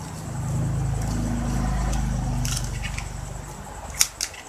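A low motor rumble swells up, holds, and fades away over about three seconds, like a vehicle passing by. About two and a half seconds in, stiff plastic ribbon crinkles briefly under the hands.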